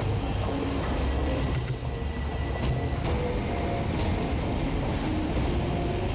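Steady low outdoor rumble like distant city traffic, with a couple of faint high chirps in the middle.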